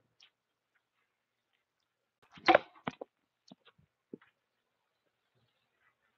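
A baseball bat swing mistimed into the batting tee, with one sharp crack about two and a half seconds in. A few lighter knocks and clatters follow as the tee and ball go down onto the pavement.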